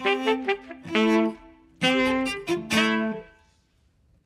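Live band ending a number: saxophone and cello with the band play a few short, punctuated phrases of held notes. The last chord dies away about three and a half seconds in.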